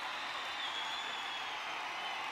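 Large concert crowd applauding and cheering steadily.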